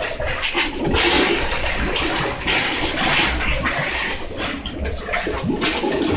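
Dirty sewage water gushing and gurgling up out of a backed-up toilet and drain in uneven surges, a blocked sewer line overflowing onto the floor.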